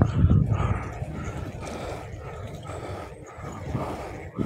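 Footsteps walking steadily on an asphalt path, about two steps a second, with a louder low rumble in the first half second.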